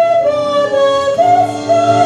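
A high solo voice singing a show tune with accompaniment, moving between long held notes, alternating between a lower and a higher pitch.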